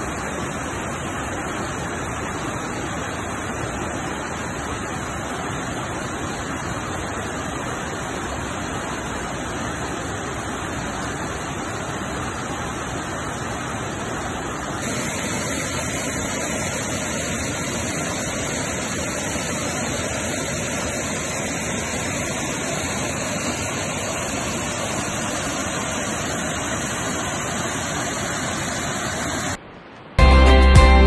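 Mountain stream rushing and splashing over boulders, a steady hiss of white water that gets a little louder about halfway through.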